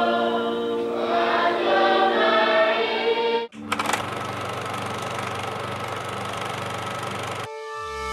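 A choir singing, cut off abruptly about three and a half seconds in. A steady low hum with a hiss follows, and music begins near the end.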